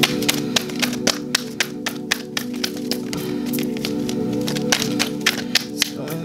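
A deck of tarot cards being shuffled by hand: a quick series of sharp card slaps and clicks, about three or four a second, over steady ambient background music.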